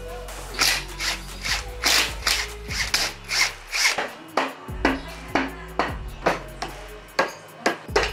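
A stiff brush scrubbing the dirty aluminium crankcase of a GY6 scooter engine in quick back-and-forth strokes, about two to three a second, over background music.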